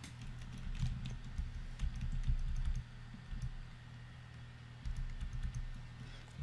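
Typing on a computer keyboard: scattered keystrokes in two short runs, the first lasting about two seconds and the second starting about five seconds in, over a low steady hum.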